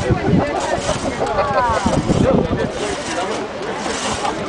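Two-man crosscut saw rasping back and forth through a log, with voices calling out over it.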